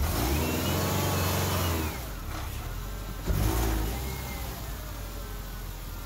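Subaru Forester's flat-four engine revving as the car is driven up onto a ramp. A long rev lasts about two seconds, a shorter rev follows about a second later, and then the engine settles to a lower steady run.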